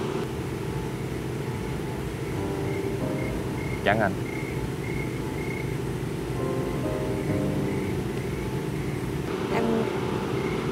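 Soft background music of slow, held notes over a steady low hum, with a faint high chirp repeating about twice a second.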